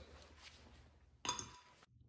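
One brief metallic clink with a short ring, about a second and a quarter in, from a steel wheel hub and its brake disc being handled. Otherwise faint room tone.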